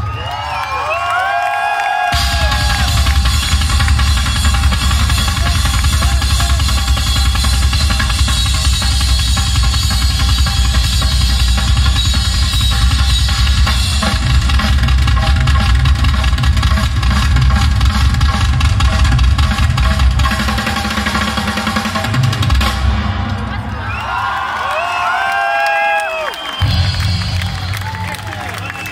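Live rock music through a concert PA, heard from within the crowd, with the drum kit to the fore: a dense, rapid bass-drum and drum-roll passage. High gliding tones rise and fall at the start and again near the end.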